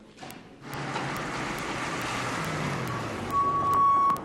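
A car driving up: steady engine and tyre noise with a low hum that rises and falls, ending with a steady high squeal in the last second.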